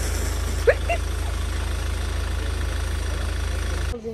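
Mahindra Scorpio SUV's engine idling steadily with an even low pulse, cutting off abruptly near the end.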